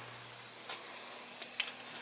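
Low, steady hum of an oil-fired boiler system running, its motor-driven parts going after an air-bound zone was purged, with a few faint clicks about a third of the way in and again near the end.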